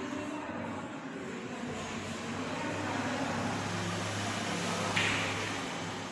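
Chalk scratching on a blackboard as a word is written, with one louder scratch about five seconds in, over a steady low hum.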